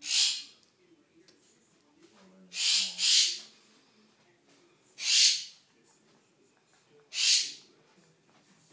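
A pet bird hollering: five loud, harsh squawks of about half a second each, two of them back to back in the middle.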